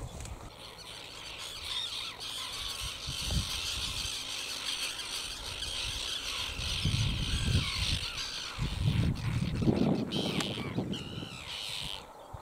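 Common tern colony calling: many harsh, overlapping calls throughout. Bursts of low rumble on the microphone come about seven seconds in and again near the end.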